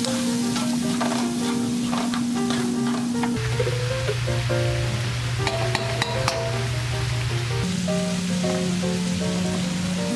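Background music with long held bass notes and a light melody over smoked duck slices sizzling in a hot frying pan, as wooden spatulas stir and scrape the meat. A few utensil clicks against the pan come around the middle.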